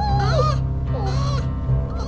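A puppy whining twice, each short cry sliding down in pitch, over steady background music.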